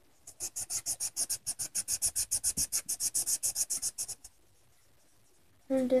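Marker scribbling rapidly back and forth on paper, colouring in, about eight strokes a second for some four seconds before stopping. Speech begins near the end.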